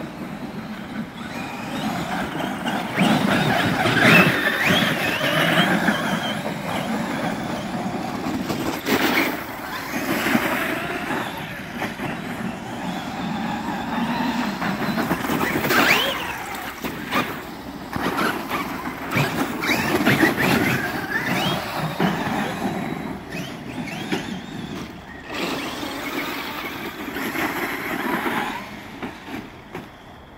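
Traxxas X-Maxx 8S electric RC monster trucks being driven hard: their brushless motors and drivetrains whine, rising and falling in pitch as they speed up and slow down, most loudly about four seconds in and again around the middle.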